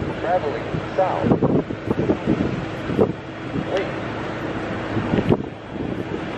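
Wind buffeting the microphone over road traffic, with indistinct speech; a steady low hum runs under it and stops about five seconds in.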